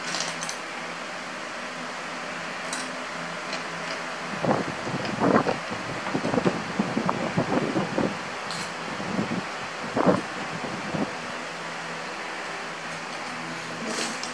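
Steady background hum with scattered clicks and rattles of plastic Lego bricks being handled and sifted through a loose pile on a tabletop, mostly in the middle of the stretch.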